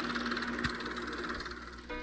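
A steady rushing noise with a faint low hum, and held musical notes coming in near the end.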